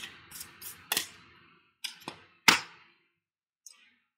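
Oracle cards being handled and drawn by hand: two sharp card snaps about a second and a half apart, with soft sliding and rustling of card stock between them.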